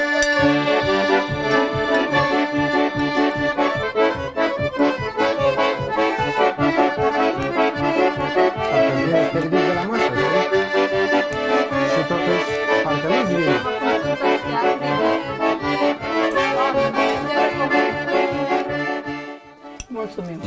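Piano accordion playing a Hutsul folk dance tune (a huțulca): a melody over held chords, with bass notes on a steady beat. The playing stops just before the end.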